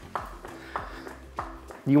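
Floor jack being pumped to lift a car: a short click with each stroke of the handle, about every 0.6 s.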